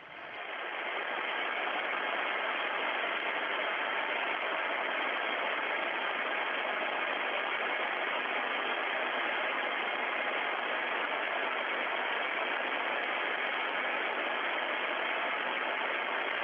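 Steady, even static hiss with a thin, narrow-band sound, like an open audio feed line. It fades in over the first second and then holds level without change.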